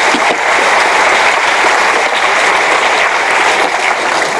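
Audience applauding steadily at the close of a talk.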